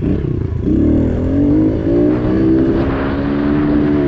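Pit bike engine running under throttle while being ridden on a dirt track. Its pitch dips briefly at the start, picks up again about a second in, then holds fairly steady as the bike climbs.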